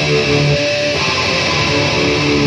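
Gold-top Les Paul-style electric guitar being played: a few held notes that change pitch about once every half second to a second.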